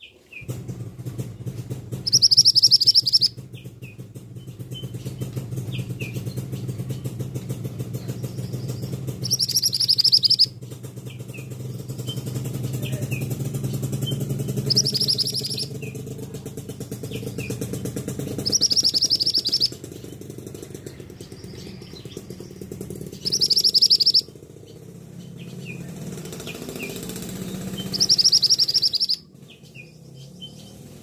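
Male scarlet minivet giving loud, high, shrill calls, each a rapid burst about a second long, six times at intervals of four to five seconds. Fainter short chirps come between the calls, over a low steady drone.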